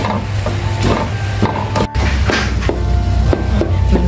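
Wooden spatula and chopsticks scraping and folding thick mung bean paste in a nonstick pan, in repeated strokes, as the filling is cooked down to dry out. Background music plays under it.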